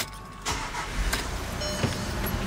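Volkswagen Amarok pickup's diesel engine started with the key: it catches about half a second in and settles into a steady idle.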